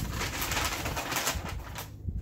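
Paper gift bag and tissue paper rustling and crinkling as they are handled, stopping sharply near the end.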